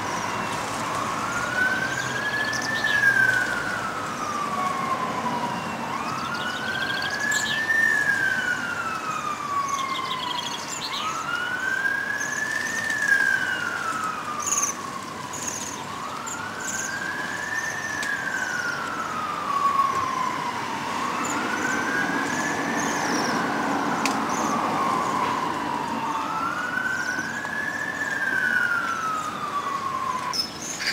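Emergency vehicle siren in wail mode, sliding slowly up and back down in pitch about every five seconds, six times over, with short high bird chirps above it.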